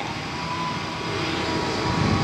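Street traffic: a steady engine noise that slowly grows louder, with a faint steady whine.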